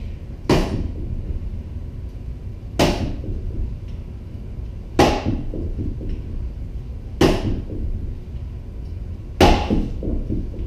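Rattan sword striking a padded pell: five sharp snap blows about two seconds apart, each with a short ring-off, over a steady low hum.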